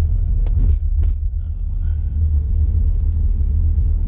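Steady low rumble of a car driving slowly, heard from inside the cabin, with two short knocks about half a second and a second in.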